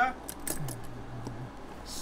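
A few light, sharp clicks in quick succession in the first half-second, like small hard objects knocked together, followed by a short, low, steady hum of a voice.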